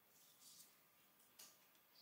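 Near silence: room tone, with two faint, brief handling sounds from gloved hands lifting a bar of soap, about half a second in and near the end.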